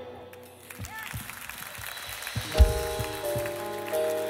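A band's worship song dies away into a quiet pause with a few faint knocks, then soft sustained keyboard chords begin about two-thirds of the way in, changing slowly.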